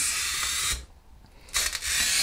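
Glass cutter's wheel scoring thick, textured stained glass: a gritty hiss that breaks off for about half a second in the middle and then resumes as the cutter is drawn on to the edge.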